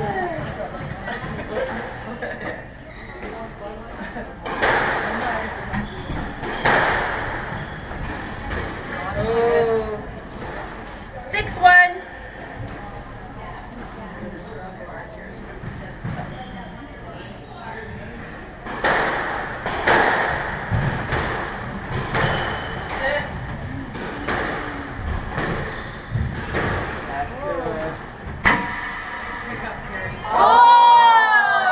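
A squash rally. The ball is struck by racquets and bangs off the court walls in a string of sharp thumps, in two spells of play with a lull between them, and there is one louder ringing hit about twelve seconds in. The court is echoing.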